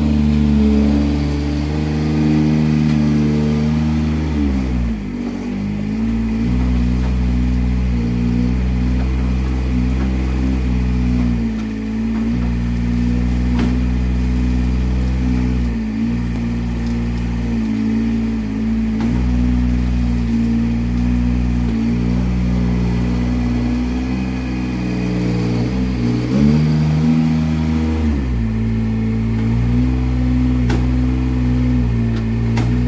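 Engine of a compact wheeled mini loader running steadily under the operator as it drives and works its front bucket, the engine note shifting several times in pitch.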